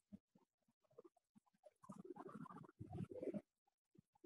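Near silence, broken by faint, muffled voice-like sounds from about two seconds in, lasting around a second and a half.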